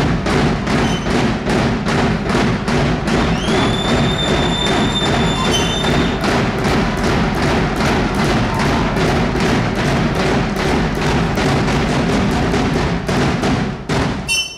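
Large painted hand drum beaten in a steady, fast rhythm, about three strokes a second, for traditional dance. A shrill whistle sounds over it for about three seconds, starting some three seconds in, and the drumming stops at the very end.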